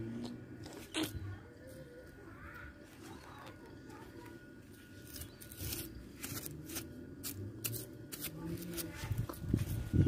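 Handling noise from a phone held close to the face: scattered clicks and rubs with a faint low background hum, and a few weak fragments of a voice.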